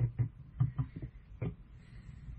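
A handful of short, soft knocks and clicks from hands working a fly-tying vise while chenille is wrapped onto a jig.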